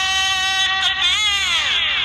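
A man's voice singing into a microphone: one long high note held for about a second, then sliding down in pitch and fading near the end.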